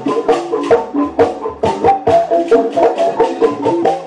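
Sundanese traditional music: a quick, even rhythm of short, pitched struck notes from wooden or bamboo percussion, with shaken percussion over it.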